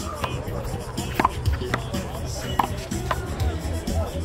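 A handball being struck, several sharp slaps about a second apart as hands hit the ball and it hits the wall, over background music.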